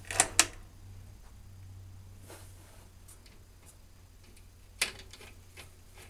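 Sentinel 400TV tube television chassis humming steadily while running on a variac at about 75 volts. Two sharp clicks come just after the start and another about five seconds in.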